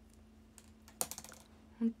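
A quick cluster of sharp clicks and taps about a second in, over a faint steady hum, followed by a woman's voice starting near the end.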